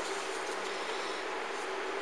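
Steady background noise: an even hiss with a constant low hum, no distinct events.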